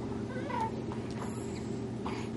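Baby vocalizing: a short high coo that bends up and down in pitch, about half a second in, over a steady low background hum.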